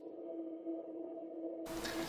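A single steady held note of background music, a pure tone with a faint overtone. Low room hiss comes back in underneath shortly before the end.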